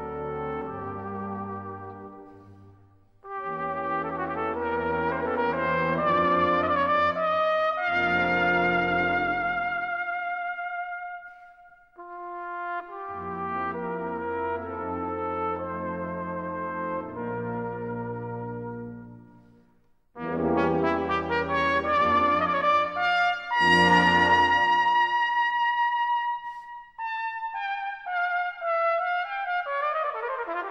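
Solo cornet playing a lyrical melody with vibrato over a full brass band accompaniment. The phrases break off briefly about 3, 12 and 20 seconds in, and the cornet line falls in pitch near the end.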